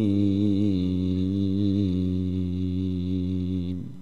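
A Qur'an reciter's voice in tilawah style, holding one long melodic note. The note wavers in ornaments through the first second, then is held steady and stops shortly before the end.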